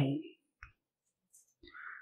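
A man's spoken word ends close to the microphone, followed by a short pause. In the pause there is a single faint mouth click, then a soft intake of breath just before he speaks again.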